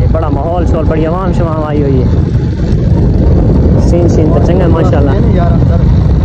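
Steady low rumble of a vehicle moving along a dirt track, with a person's voice over it in the first two seconds and again a little past the middle.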